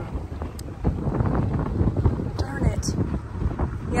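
Wind buffeting the microphone on a small motorboat under way, with the boat's motor and the water rushing past underneath, the gusts rising and falling.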